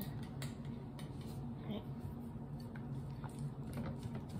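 A plastic spoon stirring slime in a glass bowl, with scattered light clicks and scrapes of the spoon against the glass.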